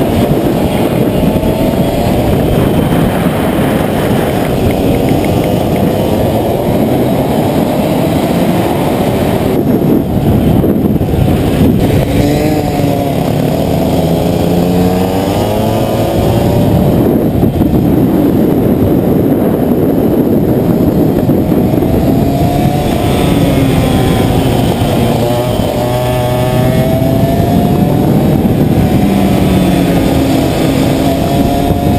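Racing kart engines running hard on track, heard from onboard. Their pitch rises and falls again and again as the karts accelerate out of corners and back off into them.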